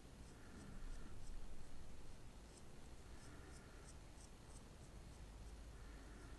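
Faint, scratchy strokes of an e.l.f. Brow Tint gel wand brushing through eyebrow hairs, coming in short runs. A low handling bump is heard about a second in.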